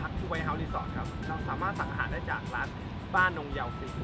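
A man's voice talking over background music, with a steady low rumble underneath.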